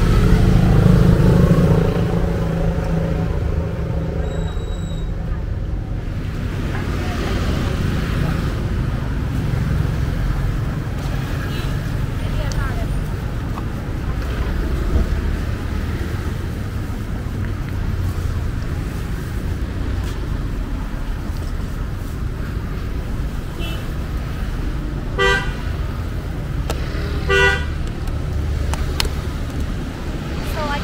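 Steady street traffic rumble, with two short vehicle horn toots about two seconds apart near the end.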